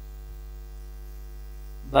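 Steady low electrical hum, of the mains-hum kind, with no change through the pause; a man's voice comes in right at the end.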